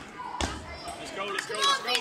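Table tennis rally sounds: a sharp knock about half a second in, then excited shouting from the players near the end as the point ends.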